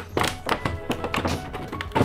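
A clear plastic blister tray and its lid being handled and pulled apart, giving a series of light plastic knocks and taps.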